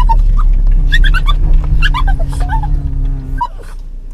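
A dog whining in short, high-pitched whimpers inside a moving car, over the cabin's loud low road rumble and a steady hum. The rumble drops away near the end.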